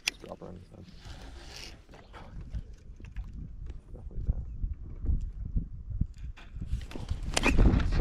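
Wind rumbling on the microphone with scattered knocks and clicks from handling a baitcasting rod and reel while a hooked bass is fought from the boat deck, ending in a loud yell near the end.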